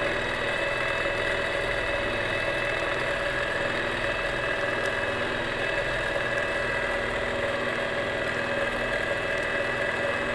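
Longarm quilting machine stitching steadily: a continuous motor hum with the needle's rapid, uneven stitching pulse underneath.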